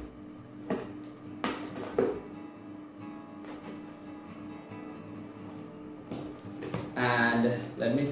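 Soft guitar background music, with a few short ripping and crackling sounds as the packing tape and cardboard of a parcel are torn open: about three in the first two seconds and one more near the end.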